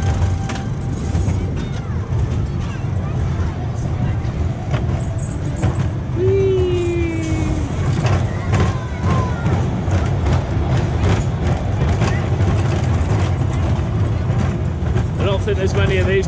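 Pinfari inverted family coaster train running along its steel track, heard from on board: a steady low rumble of wheels and wind with scattered clatter. A short falling pitched sound comes about six seconds in, and riders' voices start near the end.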